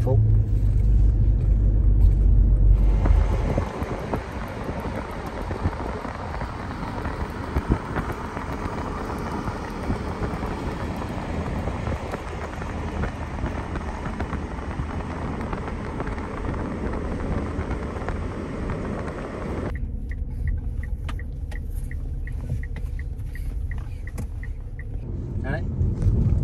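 Car cabin noise on the move: a deep engine and road rumble for the first few seconds, then a steady road hiss. About twenty seconds in the hiss drops away to a quieter hum with an even, quick ticking, about two ticks a second.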